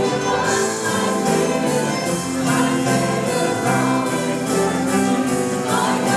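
Live worship band playing: several voices singing together in harmony over piano and drums, with a steady beat.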